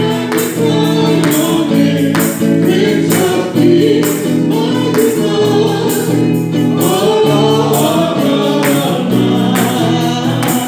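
Live gospel worship song: a woman singing lead into a microphone over electric guitar, with a steady beat about twice a second.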